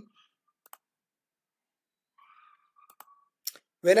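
A few single computer mouse clicks, about three, spread across an otherwise near-silent stretch.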